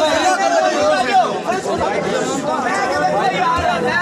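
Crowd chatter: many voices talking over one another at once.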